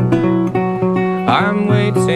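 Acoustic guitar playing a folk song's accompaniment: plucked notes over held bass notes.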